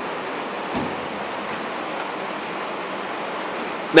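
Steady hiss with a single short knock about three-quarters of a second in, as a steel tool chest drawer is moved and the next one is opened.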